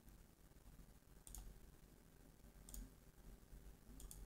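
Two faint computer mouse clicks, about a second and a half apart, over near-silent room tone with a low hum.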